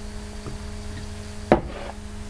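A mug set down on a desk: a single sharp knock about one and a half seconds in, over a steady low electrical hum.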